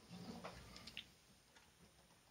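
Near silence: room tone with a brief low hum near the start and a few faint clicks about half a second to a second in.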